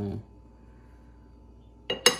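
A metal spoon clinking sharply against a glass mixing bowl near the end, with a brief ringing after the tap.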